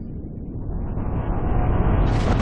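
Cinematic rumble sound effect swelling steadily louder and brighter, a low roar building toward a hit right at the end.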